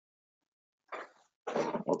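Dead silence for about the first second, then a short breathy noise about a second in, and near the end a man's voice starts speaking over a video-call line.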